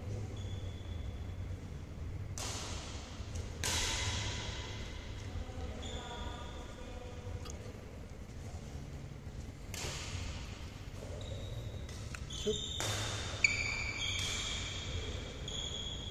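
Badminton rally sounds in a large hall: racket strikes on the shuttlecock that echo off the walls, with sneakers squeaking briefly on the court floor. The sharpest strike comes a little after the middle.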